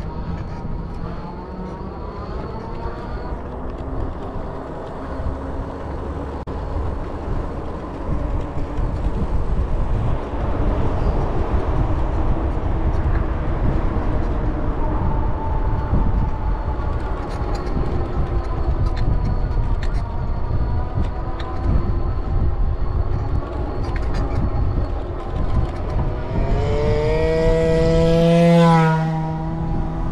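Wind rumbling on the microphone of a moving e-bike, with the electric motor's whine gliding up and down in pitch as the speed changes. Near the end a louder vehicle sound swells and falls away as it passes.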